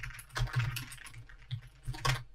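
Computer keyboard typing: a handful of irregular keystroke clicks as text is entered.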